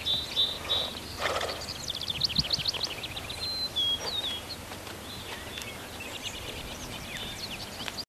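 Several wild birds singing in the open, with fast trills of repeated high notes and short chirps over a faint steady background.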